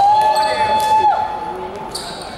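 A person's long, drawn-out shout, held on one pitch for about a second before falling away, amid the thud of a basketball in an echoing sports hall.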